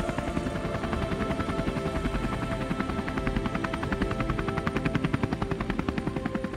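Helicopter rotor chop, a rapid even beat of blade pulses, heard under sustained music tones.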